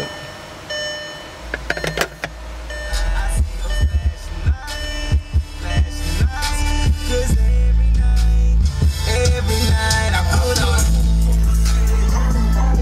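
Bass-heavy music playing through a car stereo, with an Alpine Type R 12-inch subwoofer powered by a JL amplifier. The bass gets louder as the volume is turned up, then runs as loud, sustained low bass notes for the second half.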